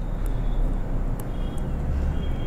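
Steady low background rumble with a few faint ticks, and no speech.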